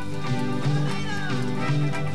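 Live band playing an instrumental passage: acoustic guitar and drum kit over a steady bass line. About a second in, a short wavering pitched sound slides downward over the music.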